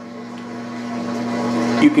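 A steady mechanical hum with a rushing noise that grows gradually louder over the two seconds.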